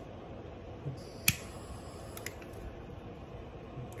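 A single sharp click about a second in, then a few fainter ticks, over a steady low background hum.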